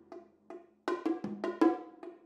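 Bongos and tom-toms struck with mallets in a quick, uneven rhythm of about eight strokes, each ringing briefly at a clear pitch. A deeper drum sounds under one stroke a little past halfway.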